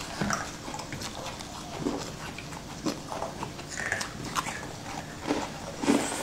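Close-up chewing and biting of a sugar-crusted purple sweet: irregular crisp crunches and wet mouth clicks, with a few short squeaky mouth sounds.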